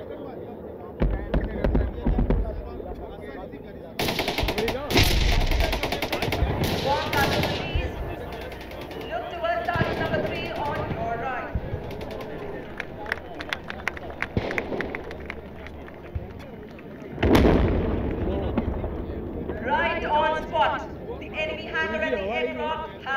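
Distant ordnance detonations: a sudden heavy blast about four seconds in, followed by a run of rapid crackling reports, and another loud blast a few seconds from the end. Spectators' voices come in between the blasts.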